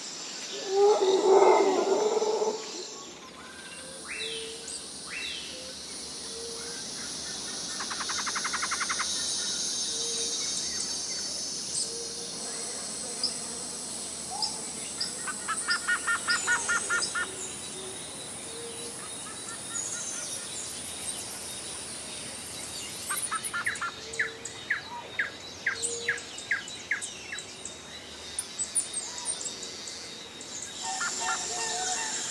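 Several birds calling outdoors: short chirps and whistles, quick repeated trills in the middle and near the end, and a soft note recurring every couple of seconds. A steady high hiss runs beneath them, and a brief louder, lower sound comes about a second in.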